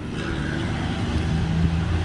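Wind on the microphone with a steady low engine hum underneath, like nearby road traffic.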